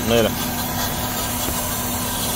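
Toyota Corolla 1.8 four-cylinder engine idling with a steady hum. It is running lean on unmetered air that a misrouted vacuum hose lets into the intake.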